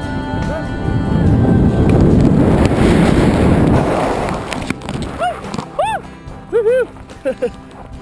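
Tandem parachute landing: a loud rush of wind noise and the slide along the ground lasting about three seconds, over background music. After it come several short rising-and-falling vocal cries.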